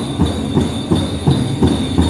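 Powwow drum struck in a steady beat, about three strokes a second, with the jingle of dancers' bells.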